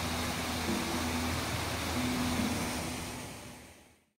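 Steady rush of water splashing from an outdoor fountain's jets, fading out over the last second.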